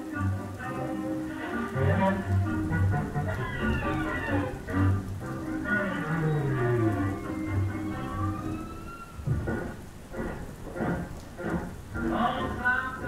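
Rain and thunder under music made of sustained low notes and sliding pitches, with a long downward glide about halfway through.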